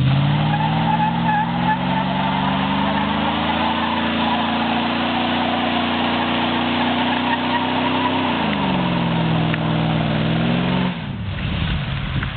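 A 1996 Ford F-250 pickup with a 2½-inch glass-pack exhaust doing a burnout, its 35-inch tyres spinning and squealing on pavement. The engine revs climb over the first few seconds and hold high, then drop about two-thirds of the way through, and the sound falls away near the end.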